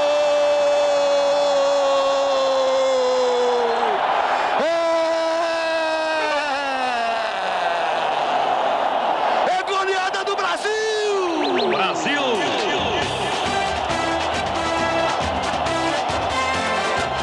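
A television commentator's long drawn-out goal shout, held on one note and sagging in pitch at the end of each breath, given twice over stadium noise. Then come sweeping musical sounds, and from about three-quarters of the way in a music track with a steady beat.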